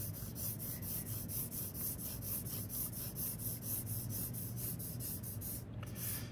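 Graphite pencil (2B) scratching on drawing paper in a quick, even run of short shading strokes, about five a second, laying down marks in the direction of the hair.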